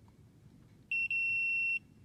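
Multimeter continuity beeper sounding one steady, high-pitched beep about a second in, with a brief stutter just after it starts, as the probes touch the two ends of toroidal transformer T1's 30-turn secondary winding: the winding has continuity.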